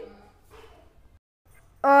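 A very quiet pause between spoken lines: faint room noise, a brief dead-silent gap, then a woman's voice starts again near the end.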